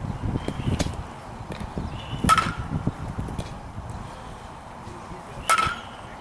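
Baseball bat hitting pitched balls twice, about three seconds apart. Each hit is a sharp crack with a brief metallic ring.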